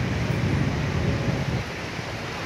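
Steady low rumble of city street traffic, with no distinct single vehicle or event standing out.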